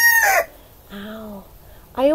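Rooster crowing close by and loud. The crow's long held final note ends about half a second in.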